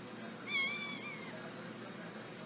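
A kitten gives one high-pitched mew, wavering slightly and lasting under a second, beginning about half a second in. It comes during rough play with another kitten.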